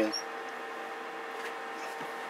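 Steady electrical hum and hiss from running bench test equipment, with several faint steady tones and no change.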